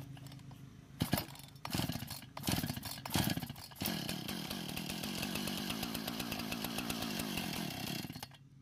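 Recoil starter rope of a Husqvarna 455 Rancher two-stroke chainsaw pulled four times, the engine turning over without firing. About halfway through this gives way to a steadier mechanical whir with a fast, even pulse.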